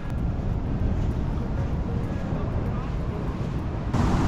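Steady low rumble of wind buffeting the microphone, mixed with the wash of heavy ocean surf breaking on the beach.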